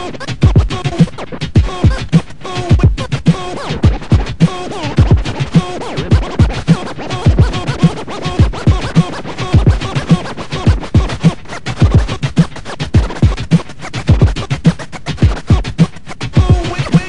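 Turntable scratching through M-Audio Torq digital vinyl software: a sample is cut rapidly back and forth by hand on a control record, chopped by the crossfader, over a beat with a steady kick drum about twice a second.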